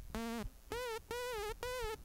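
Xfer Serum software synthesizer playing short sawtooth notes: one lower note, then three notes about an octave higher with a wavering, detuned tone. Key tracking (Note#) drives the unison blend, so the higher the note, the more it is modulated.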